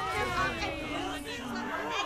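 Only speech: several voices talking over one another.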